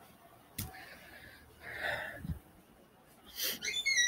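A person breathing close to a phone microphone, with a short breathy noise about two seconds in, and a click and a thump from the phone being handled. Near the end come a few short high tones that step down in pitch.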